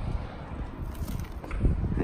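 Wind buffeting the microphone: a low, gusty rumble without any clear tone.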